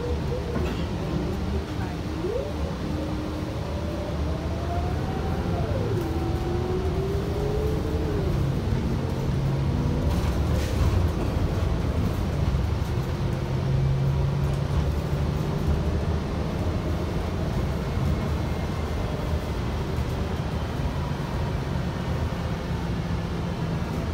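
Cabin noise of a Gillig Low Floor Plus CNG transit bus under way: a steady low engine and road rumble. A drivetrain whine climbs in pitch and drops back twice in the first eight seconds, like gear upshifts as the bus accelerates, then settles into steady cruising.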